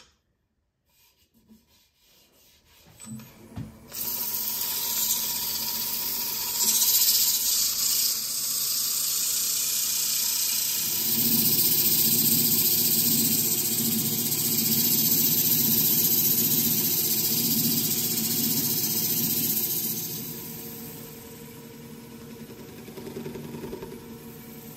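A wood lathe spins up, then abrasive held against the spinning yew and mahogany bowl gives a loud, steady rushing hiss over the lathe's hum. A low pulsing rumble joins partway through, and the hiss eases off near the end, leaving the lathe running more quietly.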